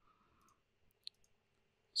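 A single computer mouse click about halfway through, otherwise near silence.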